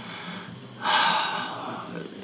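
A man's single loud breath, about a second in and lasting about half a second.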